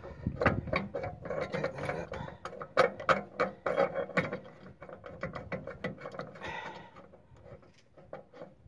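Quick metallic clicking and rattling from a loose trailer hitch ball and its Extreme Max hitch mount being turned and worked by hand. The clicks are densest in the first half and thin out toward the end.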